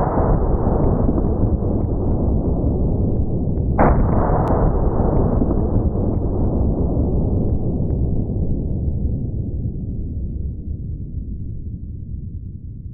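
Slowed-down gunshot of a CheyTac M200 Intervention rifle firing .408 CheyTac: a deep boom with a long fading rumble, then a second deep boom about four seconds in that fades slowly.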